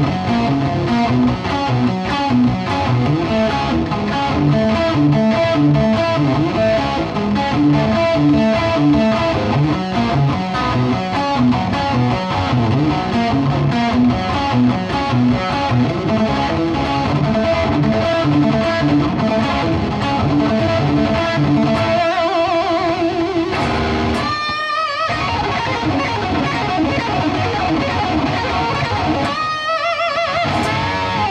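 Kramer 'The 84' Diver Down electric guitar, with a Seymour Duncan JB humbucker and Floyd Rose tremolo, played through an amplifier in fast runs of notes. A few held notes waver in pitch, once about two-thirds of the way through and again near the end.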